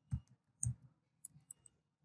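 Short clicks from computer keys or mouse buttons. There are two louder clicks in the first second, then three or four lighter, quicker ticks about a second and a half in.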